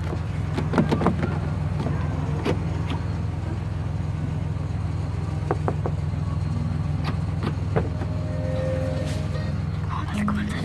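Steady low drone of a car travelling, heard from inside the cabin, with scattered light clicks and knocks, a cluster of them about a second in.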